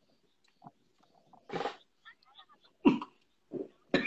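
Brief, scattered snatches of people's voices over a live-stream connection, with short pauses between them and a short noisy burst like a cough about a second and a half in.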